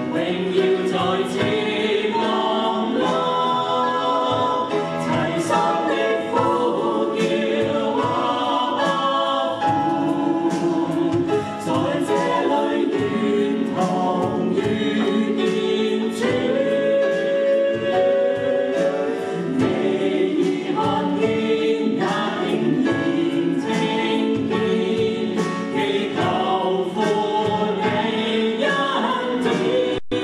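Mixed male and female voices of a four-person worship team singing a Chinese-language worship song together, with live band accompaniment keeping a steady beat.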